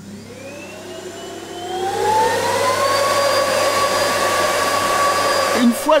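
Vacuum cleaner switched on, its motor spinning up with a rising whine over about the first three seconds, then running steadily.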